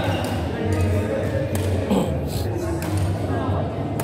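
Indoor badminton hall ambience: background voices chatting over a steady low hum, with a few short sharp taps.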